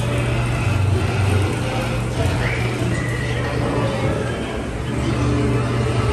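Dark-ride sound-effects soundtrack: a steady low rumble under a dense mix of scene noise, with one short rising squealing cry about two seconds in.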